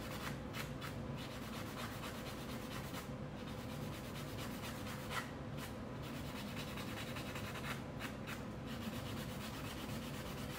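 Nail buffer block rubbing back and forth over a dip-powder nail, a steady fine scratchy rubbing of quick short strokes as the surface is smoothed.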